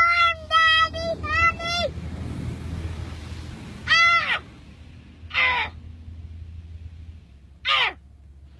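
A toddler's high-pitched, whiny cries: a quick run of short cries in the first two seconds, then three separate cries, each dropping in pitch at its end. Under them runs the steady low hum of a car interior.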